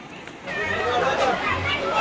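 People talking, with voices starting about half a second in after a brief lull.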